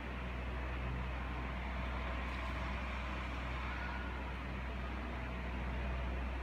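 Steady low hum with an even hiss above it, unchanging throughout: room background noise with no speech.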